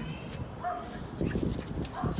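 A miniature pinscher gives one short, faint whine about half a second in, amid some faint rustling.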